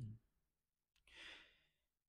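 Near silence, then about a second in a soft click and a faint breath out lasting about half a second.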